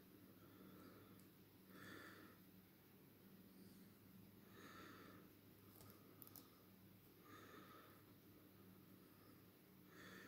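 Near silence: room tone with a faint steady low hum and a few faint breaths every few seconds.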